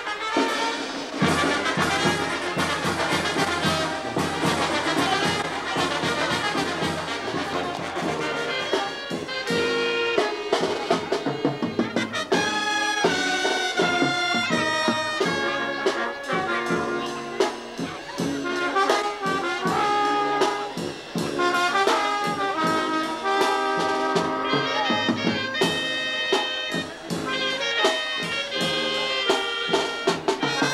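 Brass band music, with trumpets and trombones playing over a steady beat.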